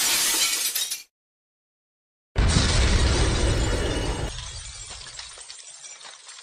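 Intro sound effects: a short burst of shattering, glassy noise, about a second of dead silence, then a sudden heavy impact with a deep low rumble that slowly dies away.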